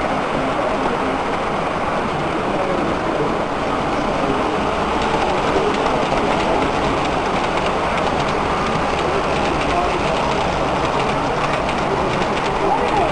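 A model freight train rolling past on the layout, its wheels clicking over the track, over a steady background hubbub of people talking in the room.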